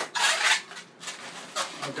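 Latex 260 twisting balloons rubbing against each other and the hands as they are handled. There is a loud rasping rub in the first half-second, then quieter scattered rubbing.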